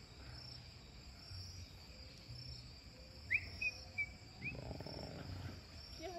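Faint, steady high-pitched insect chorus, with a few short chirps a little past halfway.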